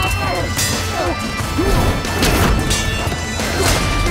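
Swords clashing in a melee, several sharp metallic clangs with ringing after them, over dramatic score music, with fighters' shouts.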